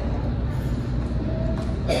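Steady low background rumble, with no speech.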